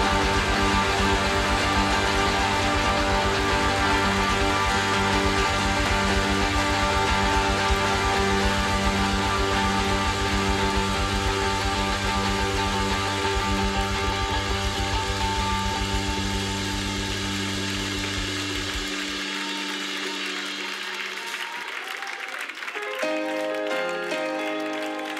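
Live worship band holding steady sustained chords between sung sections. A low bass note drops out about three-quarters of the way through, the music thins and fades down, and a new chord comes in near the end.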